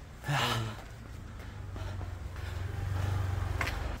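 A short breathy gasp from a person climbing a very steep hill, about a third of a second in, then a steady low hum that slowly grows louder.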